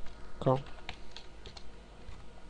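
A handful of separate keystrokes on a computer keyboard, typed one at a time.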